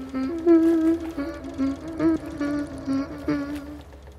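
A wordless lullaby tune hummed in a woman's voice: a slow string of short held notes stepping up and down, stopping just before the end.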